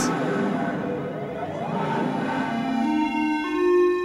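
Electronic synthesizer tone from a Max/MSP patch built on a Moog object, played by hand movements: a sustained buzzing drone with many overtones whose pitch steps upward in the second half.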